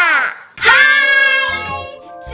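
Children's voices singing a short intro jingle, ending on a long held note about half a second in. Background music with low bass notes starts near the end.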